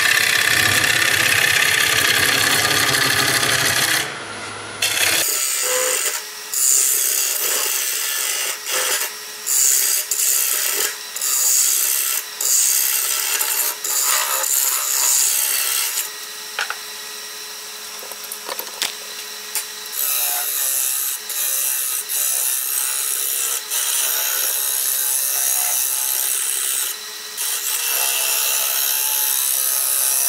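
A Beaver hollowing tool's large round cutter scraping out the inside of a wood bowl spinning on a lathe: a loud, rough rush of cutting, broken by short gaps as the tool comes off the wood. About two-thirds of the way through, the cutting stops for a few seconds and only the lathe's faint running hum is left.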